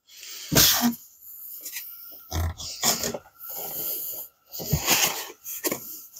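Unboxing handling noise: packaged items being lifted, slid and rubbed against the foam insert and cardboard box, a string of irregular rustles and scrapes.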